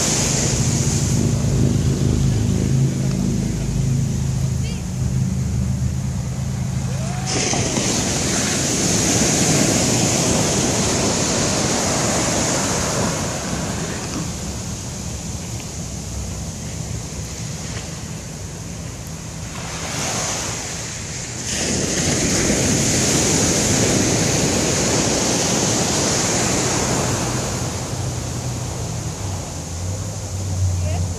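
Surf breaking and washing up a sandy beach, the wash rising and falling in slow surges, with wind buffeting the microphone.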